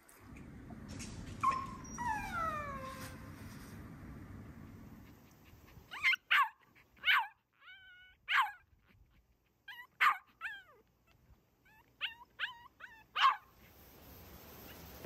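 Small terrier whining in a couple of falling whimpers, then giving about ten short, sharp barks in quick clusters.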